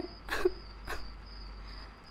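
A steady high-pitched cricket trill in the background, with two short breaths from a distressed woman in the first second.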